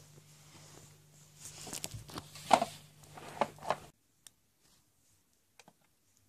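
Faint handling noise of a plastic toy horse being moved and rubbed by hand: soft rustling with a few light knocks and clicks, the loudest about two and a half seconds in. The sound cuts out abruptly about four seconds in, leaving only a few faint ticks.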